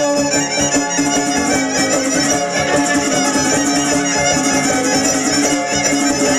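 Son arribeño (huapango arribeño) ensemble playing an instrumental passage: two violins carry the melody over a strummed huapanguera guitar, with no singing.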